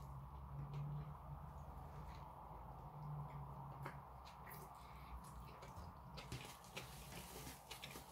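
A knife sawing through the crust of a large baguette sandwich, faint crunching strokes that thicken near the end, over a low steady hum and a few soft clicks.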